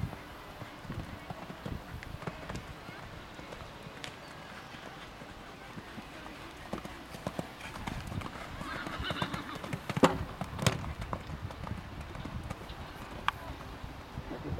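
Pony cantering on sand arena footing, its hoofbeats a run of soft, muffled thuds. Two sharp knocks come a little after the middle.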